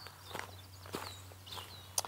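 A few soft footsteps on grass, about half a second apart.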